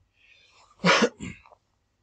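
One short, throaty vocal burst from a man about a second in, like a cough, with a faint breath just before it.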